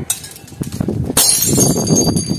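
Glass shattering on impact about a second in, followed by high ringing and tinkling of the broken pieces.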